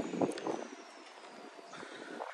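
Quiet outdoor background noise, with a faint high-pitched whine that slowly falls in pitch.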